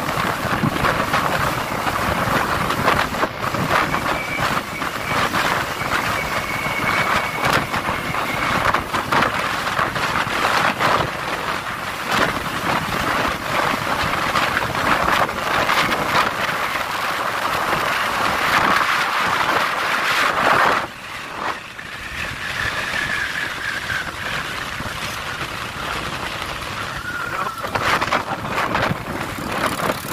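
Wind buffeting the microphone of a phone carried on a moving motorcycle, over the motorcycle's running engine. The noise drops suddenly a little over two-thirds of the way through.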